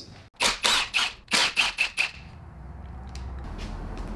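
Power wrench run in a quick series of short rattling bursts on the two 13 mm nuts holding the exhaust mount to the transmission, loosening them; a low steady hum follows.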